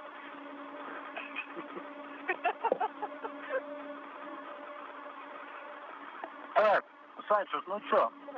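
Open space-to-ground radio channel carrying a steady buzzing hum and hiss. Faint, broken voice fragments come a couple of seconds in, and a short burst of speech comes near the end.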